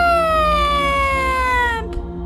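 A voice holding one long, high, sung 'aaah' that slowly falls in pitch and stops abruptly near the end, a dramatic reveal note, over faint background music.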